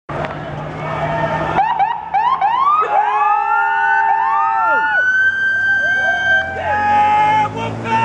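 Police escort sirens being whooped: quick rising chirps about four a second, then several overlapping wails that rise, hold and drop away. Voices come in near the end.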